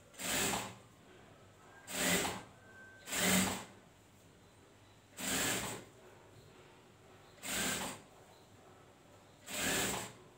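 Industrial sewing machine running in six short bursts of stitching, each under a second long, with brief pauses of one to two seconds between them as small fabric pieces are sewn.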